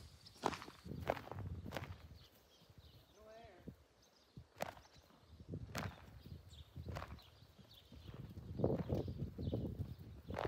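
Hoofbeats of a mare and her foal moving loose over a dirt pen: scattered, irregular hoof strikes on the ground. A brief wavering call comes about three seconds in.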